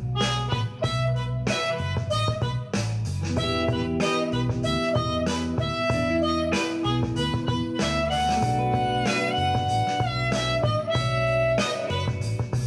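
Blues harmonica played cupped against a vocal microphone, wailing held and bent notes, over a blues backing track with guitar and a steady bass line.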